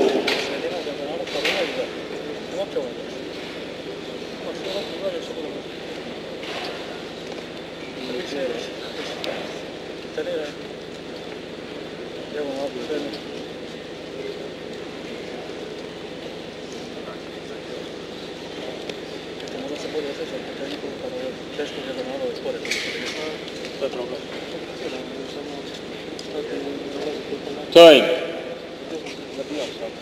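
Indistinct voices talking in a large indoor hall, with a few faint knocks and one sharp, loud knock near the end.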